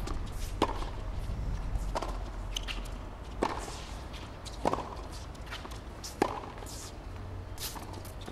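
Tennis ball struck back and forth with rackets in a baseline rally on a hard court: a sharp hit about every one and a half seconds, six or seven in all, over a low steady stadium background.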